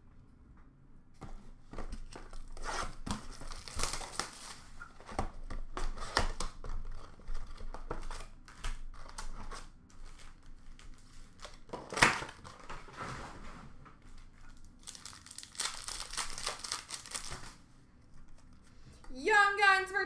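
Hockey card packs being handled and torn open: scattered clicks and rustles of cards and boxes, one sharp click about twelve seconds in, then a longer stretch of wrapper tearing and crinkling.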